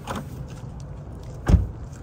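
A car door slammed shut with one heavy thud about one and a half seconds in, after a light click near the start as the door opens. A steady low rumble runs underneath.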